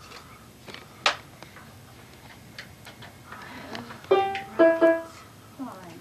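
Electronic keyboard being tried out: a sharp click about a second in, then two short notes near the end.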